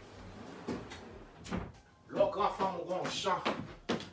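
A person talking, starting about halfway through, preceded by a few sharp knocks like something being set down or a cupboard closing.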